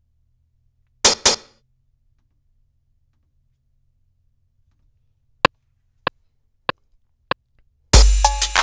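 MPC software metronome count-in: four short clicks about 0.6 s apart, one bar at 96.5 BPM, with the drum-machine pattern kicking in right at the end. About a second in, two sharp hits sound in quick succession.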